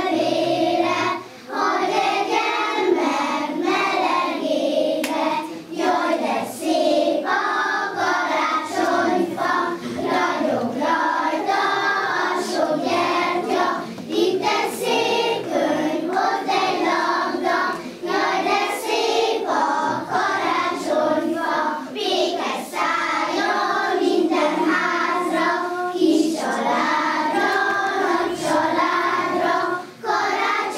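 A group of young children singing a song together in unison, phrase by phrase, with a brief break about a second in.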